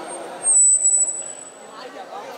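Public-address microphone feedback: a single loud, very high-pitched squeal that sets in just after the start, holds for about a second with a slight drop in pitch, and dies away before the end. Voices murmur underneath.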